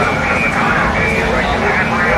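Indistinct overlapping voices of several people talking in a busy room, with a low steady rumble underneath.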